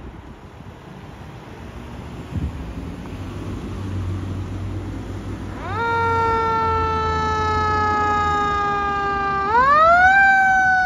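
Fire engine siren coming on about halfway through: a quick rise, then a long, slowly falling wail, sweeping up again near the end. It sounds over the low engine rumble of the approaching fire truck.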